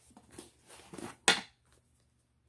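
Leather strap on a knife roll being worked loose through its metal buckle: soft handling rustle and small clicks, with one sharp metallic clink a little past the middle.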